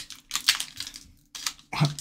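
Foil wrapper of a Pokémon booster pack crinkling and tearing as it is opened, in several short scratchy bursts with a brief pause past the middle.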